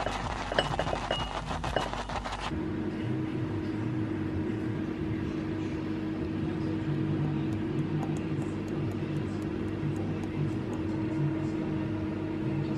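Wooden spoon knocking and scraping against a saucepan and ceramic bowls as thick porridge is spooned out, a quick run of clicks for about the first two and a half seconds. After that a steady low hum continues with faint scattered ticks.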